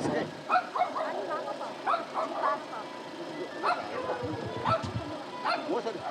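A dog barking repeatedly in short, separate barks, about ten of them at uneven intervals, with people's voices around it.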